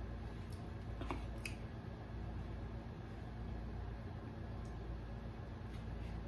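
Fork scraping and tapping on a paper plate of rice, a couple of faint clicks about a second in, over a low steady room hum.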